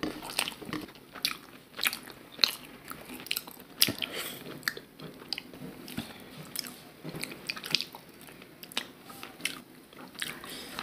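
Close-miked chewing and biting on mutton curry and rice: irregular sharp wet clicks and crunches several times a second.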